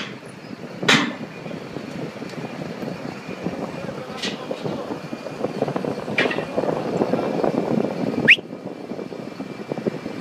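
Heavy machinery engine running steadily, with a few sharp knocks and a short rising squeak about eight seconds in.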